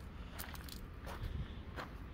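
Faint footsteps on gravel, a few steps about half a second apart.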